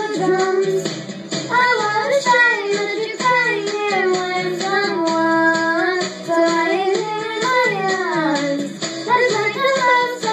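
A young girl singing into a microphone over a pop backing track with a steady beat, holding and sliding between long notes.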